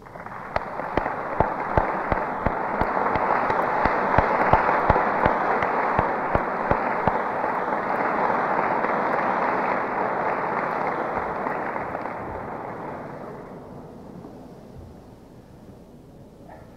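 Audience applauding. The clapping builds quickly, holds for about ten seconds, then dies away over the last few seconds.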